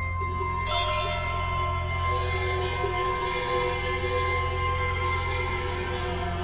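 Music: bells ringing in long, held tones over a steady low drone, with shimmering jingling washes that come in about a second in and again around three seconds in.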